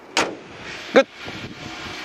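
Hood of a Mercedes-Benz GLK being shut: a single sharp bang just after the start.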